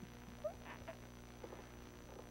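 Quiet pause: a steady low hum with a few faint, short sounds about half a second and a second and a half in.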